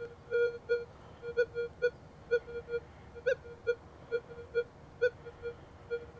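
Minelab Manticore metal detector with its 8-inch coil, in Gold Field mode, beeping as the coil is swept over a small gold nugget. The beeps are short and steady-pitched, two to four a second at uneven spacing, and one about three seconds in is slightly higher and louder.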